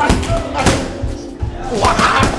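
Music with a voice in it, over several sharp thuds of gloved punches landing on a heavy punching bag.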